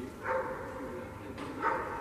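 Two short vocal calls about a second and a half apart, each a brief pitched burst louder than the steady background.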